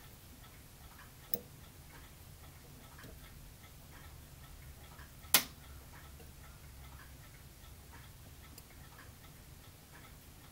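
Faint, even ticking about twice a second over a low steady hum, with a soft click about a second in and a sharp, louder click about five seconds in.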